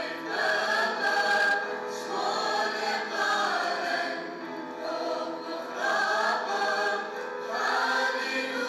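A mixed choir of men and women singing together in phrases that swell and fall.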